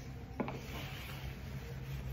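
Handling noise of a handheld phone being moved about, rubbing against the microphone, over a low steady hum, with one sharp click about half a second in.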